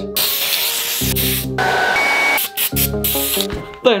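Aerosol can of white matt primer spraying in several separate hisses, the first and longest lasting about a second, over background music.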